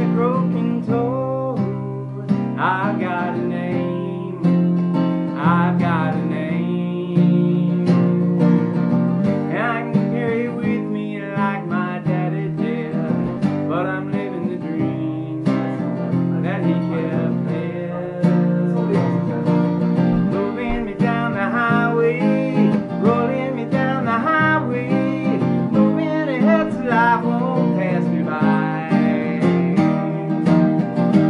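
Acoustic guitar strummed steadily as song accompaniment, with a man's singing voice coming in and out over it.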